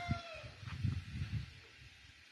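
The end of a rooster's crow, its pitch falling as it trails off just after the start. It is followed by a second or so of low, dull rumbling.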